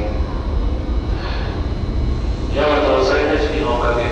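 Steady low rumble of an underground railway platform with an electric train standing at it, and a reverberant voice coming in a little over halfway through.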